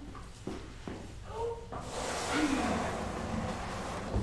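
Faint voices, then from about two seconds in a steady rustling scrape as a trash can is pulled out from under the work counter.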